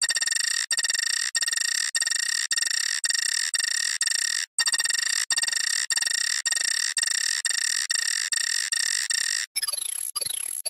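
Nokia phone startup jingle sped up and pitched up so far that it becomes a harsh, high buzzing tone, breaking off and restarting every half second or so. In the last half second it slows into quick falling sweeps.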